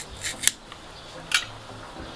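Hand-held metal garlic press being squeezed to crush garlic: a few short clicks and scrapes from its hinged metal handles and plunger.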